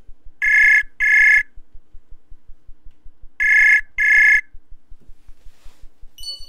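Outgoing call ringing on a browser-based voice chat: two double rings about three seconds apart, each a pair of short, steady, high electronic tones, while the call waits to be answered.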